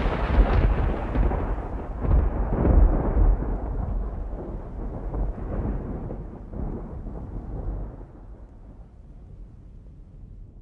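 Rolling thunder sound effect: a loud rumble with a second swell a couple of seconds in, then slowly dying away.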